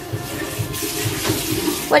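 Kitchen tap running steadily into a stainless steel sink.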